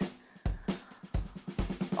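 Pokémon trading cards being handled and slid from the back of a pack to the front between the hands: a series of soft, irregular knocks and taps.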